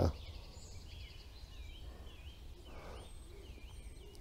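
Faint woodland ambience: a small songbird repeating short chirps, about two a second, over a low steady rumble of wind.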